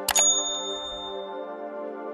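A click followed at once by a bright bell-like ding that rings out for about a second, over steady background music. This is the notification-bell sound effect of an on-screen subscribe animation.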